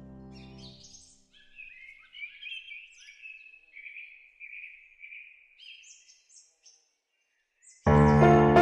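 Birds chirping and singing in short repeated phrases for several seconds as a sustained piano chord dies away. Loud piano music starts abruptly just before the end.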